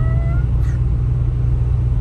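Steady low rumble of a car's engine and tyres heard inside the cabin on the road. A woman's drawn-out, rising cheer trails off about half a second in.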